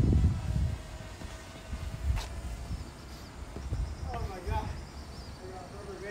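Outdoor street sound recorded while walking: low rumbling bursts on the phone's microphone, loudest at the start, and a single sharp click about two seconds in. Near the end someone nearby talks in a high voice.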